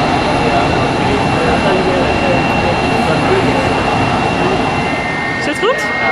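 Turbofan engines of a BAe 146-family four-engine jet air tanker as it rolls along the runway: a loud, steady jet rumble with a high whine held on one pitch. Near the end a second, slightly lower steady whine comes in.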